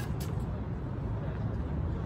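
Steady low rumble of distant city traffic.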